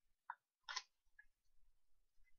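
Faint handling of a thick baseball trading card: a soft click about a third of a second in, then a brief sharper scrape or snap of card against fingers, followed by a few faint ticks.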